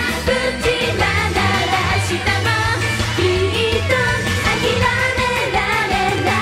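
Female idol group singing a J-pop song live into microphones over band backing with a steady bass line.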